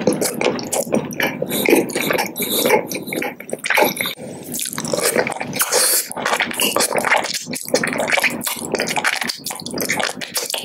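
Wet mouth sounds of sucking and lip smacking on candy, including a hard lollipop on a stick: a quick, irregular run of wet clicks and slurps.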